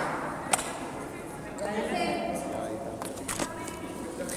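Quiet indoor basketball gym ambience: faint distant voices, and a few sharp knocks on the court, one about half a second in and a couple more near the end.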